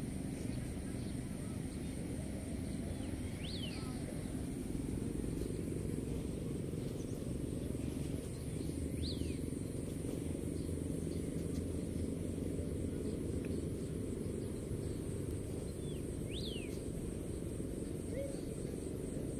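Outdoor ambience: a steady low rumble with a continuous high-pitched insect drone, and a bird giving a short, sharp call three times, several seconds apart.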